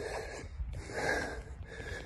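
A man's breathing between sentences: two audible, noisy breaths in quick succession, each about half a second long.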